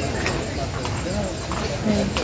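People chattering in the background, with a few short, sharp clicks scattered through it.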